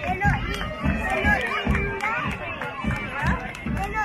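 Crowd of people chattering as they walk along together in a street procession, many voices overlapping, over regular low thuds about twice a second.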